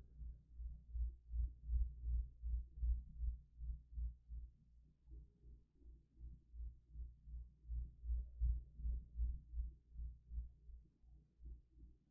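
A deep, low thumping pulse repeating about two to three times a second, swelling and fading in strength, with nothing higher-pitched over it.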